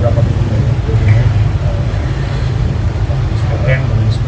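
Faint, indistinct speech over a loud, steady low rumble.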